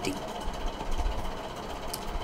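Low steady rumble with a faint hiss of background noise, a little stronger in the middle.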